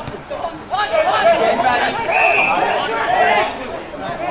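Indistinct chatter and calls from several voices, with no clear words.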